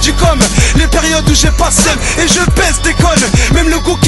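French rap freestyle: a rapper's voice delivering verses over a hip-hop beat with a steady bass line.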